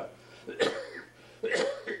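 An elderly man coughing twice, in short harsh bursts about half a second and a second and a half in.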